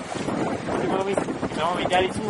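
Wind buffeting the microphone as a steady rush, with brief snatches of voices about halfway through and again near the end.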